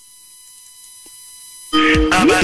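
A faint, steady, high-pitched electronic whine that slowly grows louder. Near the end, music with a beat and sliding notes starts suddenly and loudly.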